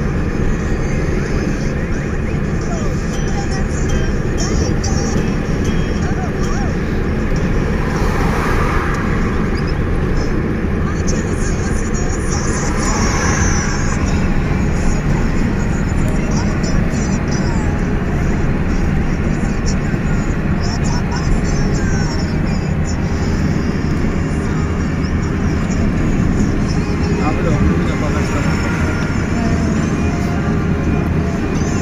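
Steady road and engine noise heard inside a moving car's cabin, with faint voices underneath.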